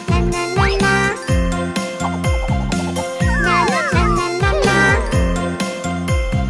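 Upbeat children's cartoon background music with a steady beat and a jingly melody. Sliding cartoon sound effects come over it: a quick rising glide about half a second in and several falling glides around the middle.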